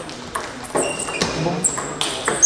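Table tennis rally: the ball clicking sharply off rubber-faced bats and the table top in a quick run of hits.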